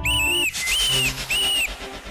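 A high whistle sounding three short notes in a row, each rising, holding and falling, over faint background music.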